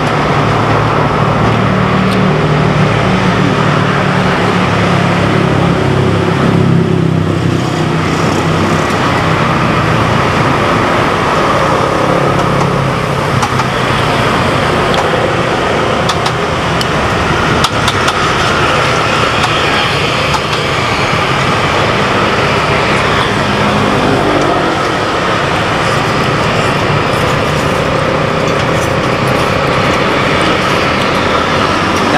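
Continuous road traffic noise from passing motor vehicles, with a heavier engine rumble in roughly the first dozen seconds.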